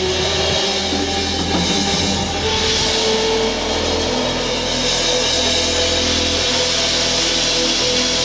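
Live band playing an instrumental passage: electric guitar over a double bass holding long, low notes that change every second or two.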